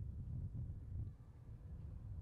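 Faint outdoor ambience: a low, uneven rumble of wind on the microphone.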